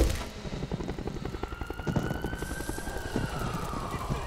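A siren wailing over a rapid irregular crackle. The wail rises slowly from about a second in, then falls away in pitch near the end, just after a loud low rumble cuts off at the start.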